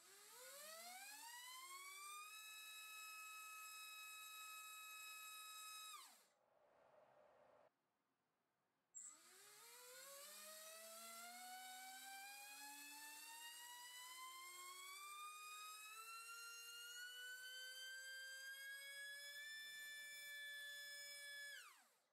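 MAD Racer 2306-2750KV brushless motor spinning a 5-inch three-blade prop on a thrust stand, a faint whine. On 3S it rises quickly, holds steady for a few seconds and then winds down. After a short gap, a second run on 5S climbs slowly in pitch for about twelve seconds up to full throttle before cutting off.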